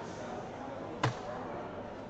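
A soft-tip dart hitting an electronic dartboard once, about a second in: a single short, sharp impact over a murmur of voices.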